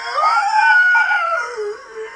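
A man's loud, long, high-pitched howl, climbing at the start, held high, then sliding down in pitch before it ends.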